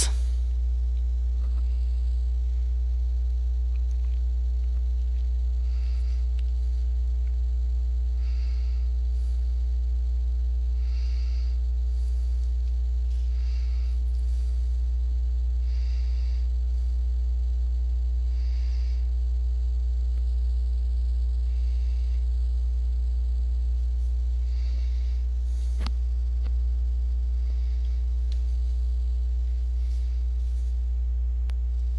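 Steady electrical mains hum with a ladder of overtones. Faint short blips recur about every two and a half seconds, with a faint click near the end.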